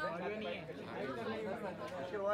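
Indistinct chatter: voices talking in the background with no clear words.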